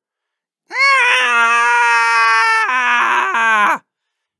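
A single voice giving one long, high-pitched wail, acted as a distraught character's cry of dismay. It is held steady for about two seconds, drops in pitch a little past halfway, and breaks off near the end.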